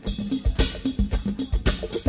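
A band's drum beat kicks in at the start of a song: steady kick and snare strokes, several a second, over a held keyboard note. With no drummer on stage, the drums come from a backing track or drum machine.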